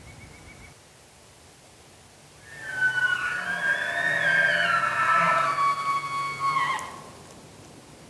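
A bull elk bugling once, for about four seconds starting some two and a half seconds in. It is a high whistling call that climbs and wavers, over a low tone underneath, and then breaks off.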